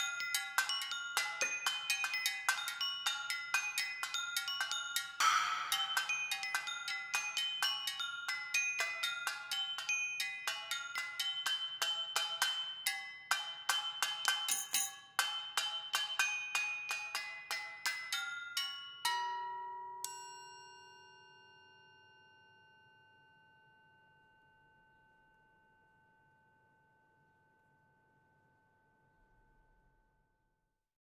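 Metal percussion played with mallets: tuned metal pipes and other small metal instruments struck in quick, dense patterns, with a brief noisy crash about five seconds in. The playing stops about two-thirds of the way through on a final couple of strokes whose bell-like tones ring on and slowly fade away.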